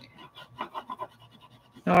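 Oil pastel scribbled back and forth on drawing paper: a faint scratching of quick, light strokes, several a second.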